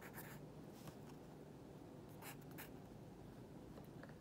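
Faint sound of a pink pencil writing a word on a paper worksheet, in a few short strokes.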